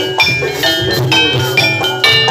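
Jaranan music in a Javanese gamelan style. Struck metallophone notes ring in quick succession over a steady drum beat.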